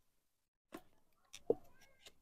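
Faint clicks and rustles of a paper-lined cardboard food box being opened by hand: one click a little under a second in, then a short cluster about a second and a half in that includes a brief pitched sound.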